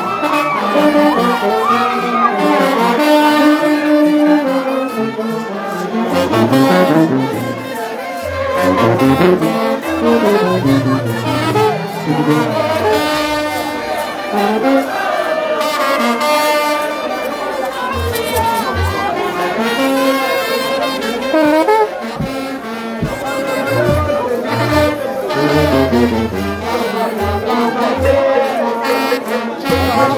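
Rara band playing in a street procession: trombones and sousaphones in overlapping lines over drums, with crowd voices mixed in.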